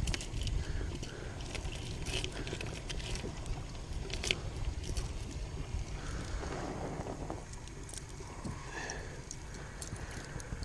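Scattered small clicks and rattles of fishing hooks, rigs and a plastic tackle box being handled, over a steady low rumble.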